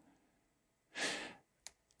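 A man draws one short breath about a second in, followed by a faint click.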